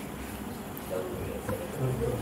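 A steady low buzzing hum. Faint, indistinct murmured voices join in about a second in.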